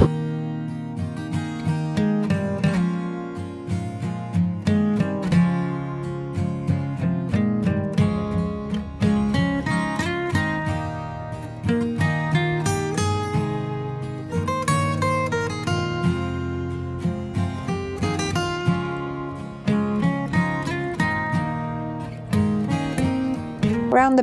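Background music: a plucked acoustic guitar tune.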